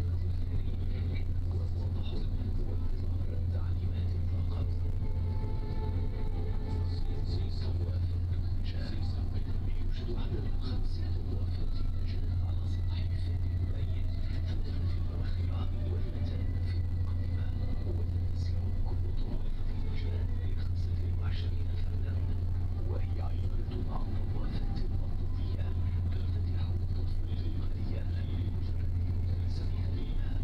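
A ferry's engines running with a steady low drone, heard from on board.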